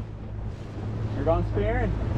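Small open boat's engine running steadily under way, with wind buffeting the microphone. A voice calls out briefly a little past the middle.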